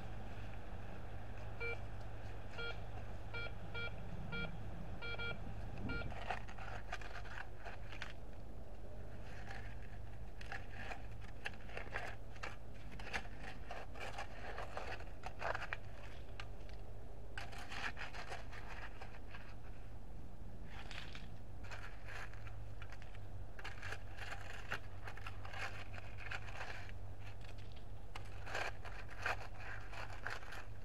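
Metal detector beeping over a buried target, the same tone repeating about twice a second for a few seconds: a steady, repeatable signal that the detector reads in the nickel-to-ring range. Then a plastic scoop scrapes and crunches through cold dirt and gravel as the target is dug up.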